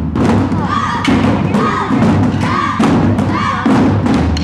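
Taiko drums struck hard with wooden sticks in a steady driving rhythm by several players, with four short high shouts in time with the beat, about one a second.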